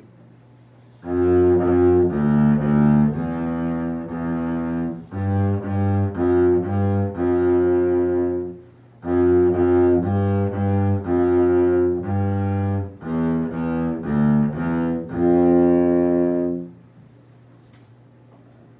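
Double bass played with the bow: a slow exercise melody of separate sustained notes, in two similar phrases with a short break about halfway through. It starts about a second in and stops a little before the end.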